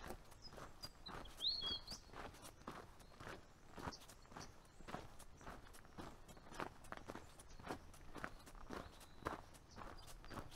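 A hiker's footsteps on a dirt and gravel trail, steady at about two steps a second. A bird chirps briefly about a second and a half in.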